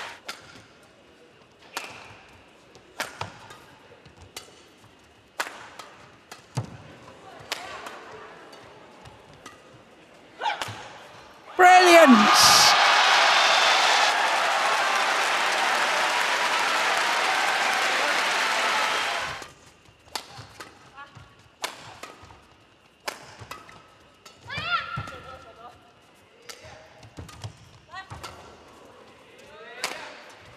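Badminton rallies: sharp racket strikes on the shuttlecock, with quiet stretches between them. About eleven seconds in, a point is won and the arena crowd cheers and applauds loudly for about eight seconds, with a shout falling in pitch at the start. After the cheering, racket hits resume for the next rally.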